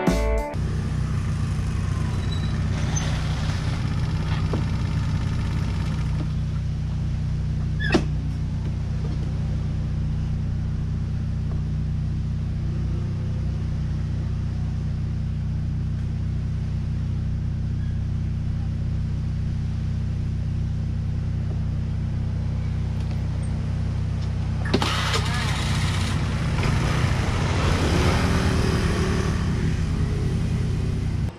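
Small motor scooter engine running steadily, with a single sharp click about eight seconds in and louder engine and road noise over the last few seconds.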